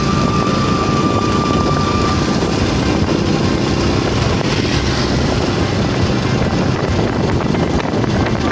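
Steady wind and road noise from a moving motorbike, with its engine running underneath.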